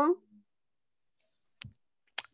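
A spoken word trails off, then near silence broken by a single short click about one and a half seconds in.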